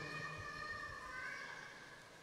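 Faint high tones, several pitches held together with small shifts in pitch, slowly fading.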